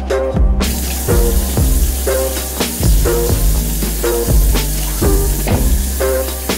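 A bathroom faucet running a steady stream into the sink, a hiss that starts about half a second in, under background music with a bass beat.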